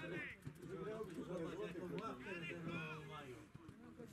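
Indistinct talking by low-pitched voices, the words not clear enough to make out.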